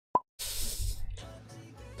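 A short, pitched plop sound effect just after the start, then a burst of hiss lasting about half a second and quiet background music with a low steady hum.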